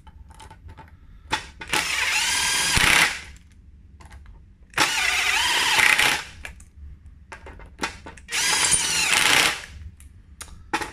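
Makita 18-volt cordless driver with a 5 mm hex bit running in three bursts of about a second each, its motor pitch wavering as it drives home the bolts that hold the drive gear onto the wheel hub. Light clicks and handling knocks fall between the bursts.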